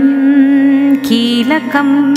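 A voice chanting a Sanskrit stotra, holding one long wavering note for about a second and then moving through a few quicker syllables, over a steady low drone.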